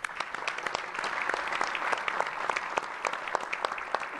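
A crowd applauding, many hands clapping together at an even level.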